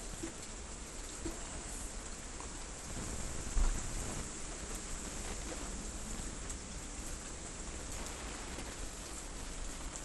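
Steady rain from a severe storm falling, with a brief low thump about three and a half seconds in.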